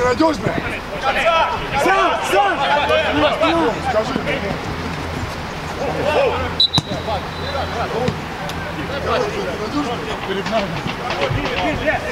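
Football players shouting and calling to one another on an outdoor pitch during play. About two-thirds of the way through there is a single sharp knock, then a brief high whistle blast, and play stops.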